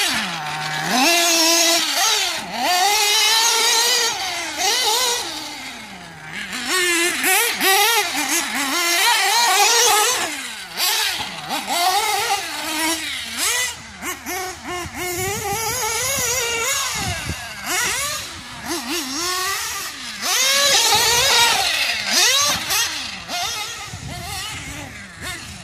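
Reds R5T nitro engine in a Losi 8ight-T 3.0 truggy, revving up and dropping back over and over, its pitch climbing and falling with each burst of throttle. Tuned a little rich but pulling smoothly.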